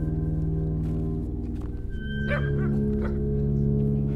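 Held, sustained chords on an old pampa piano, moving to a new chord about halfway through, with a dog yelping briefly around the middle.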